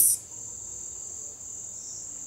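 Crickets trilling steadily in one continuous high-pitched note.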